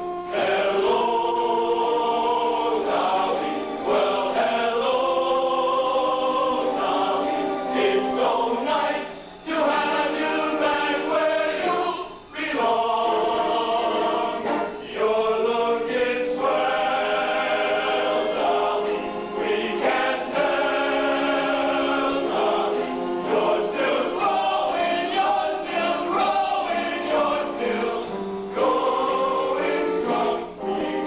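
High school choir singing a show tune in sustained chords, phrase by phrase with brief breaks between phrases. The sound is dull, with little treble.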